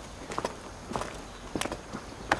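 Footsteps on gravel and dirt: three or four separate steps, roughly one every half second.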